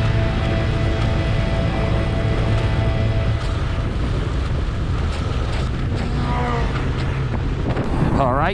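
Wind buffeting the microphone and a motorcycle engine running at road speed, a steady loud rush with a low drone. Background music fades out within the first second.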